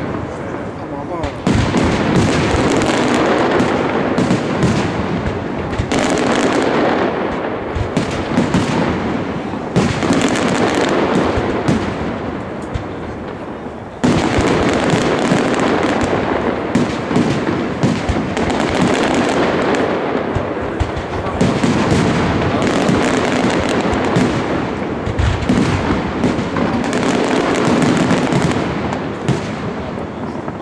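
Aerial firework shells bursting in a dense, continuous barrage. The level sags for a moment and then jumps back up suddenly about halfway through, and eases off near the end.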